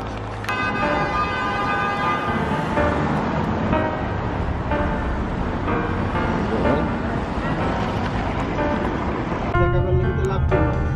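Busy city street traffic, with cars passing and a car horn sounding for about two seconds near the start. Music comes in just before the end.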